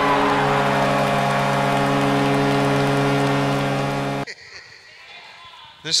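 A loud, steady horn-like alarm blare that holds one pitch for about four seconds and then cuts off suddenly, followed by quieter room noise.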